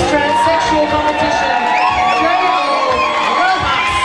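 Audience cheering and whooping, many voices shouting and shrieking at once in a loud, continuous din.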